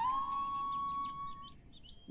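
Bamboo flute (bansuri) sliding up into a long held note that fades away about a second and a half in, with birds chirping over it.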